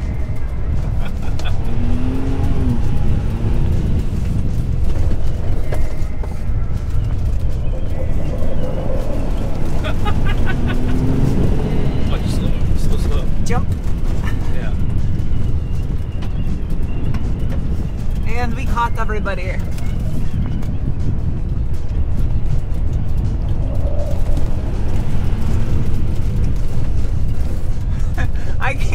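Steady low rumble of a 2021 Ford Bronco driving on a dirt trail, tyre and engine noise heard from inside the cabin. Brief voices break in now and then.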